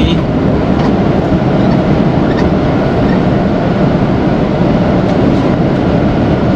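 Steady low rumble of a Mercedes-Benz Atego truck cruising on the highway, heard inside the cab: diesel engine and tyre noise together.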